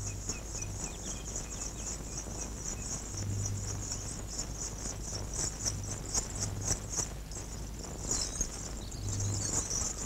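Crickets chirring steadily in a high-pitched, pulsing drone, with a faint low hum and a few light clicks beneath.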